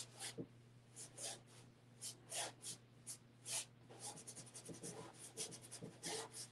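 Paintbrush stroking across a large stretched canvas: faint, dry swishes, spaced out at first, then a quicker run of short strokes from about four seconds in.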